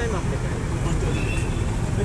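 Steady low vehicle and traffic rumble under faint chatter from a crowd gathered close around, with a short high tone about halfway through.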